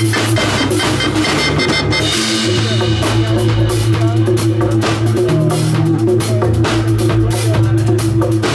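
Live roots reggae band playing, with drum kit and electric bass guitar carrying a steady, repeating bass line.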